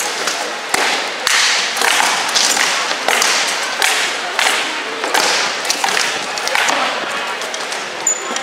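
Rattan swords in armoured combat striking shields and armour: about a dozen sharp knocks and thuds in quick, irregular succession.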